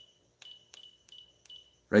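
Short high electronic beeps from a DENAS PCM-6 electrotherapy device, four of them about three a second, one for each press of its button as the intensity steps up.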